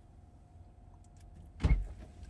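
A car door thudding shut hard, heard from inside the cabin as one heavy low thump about a second and a half in, over a steady low cabin hum.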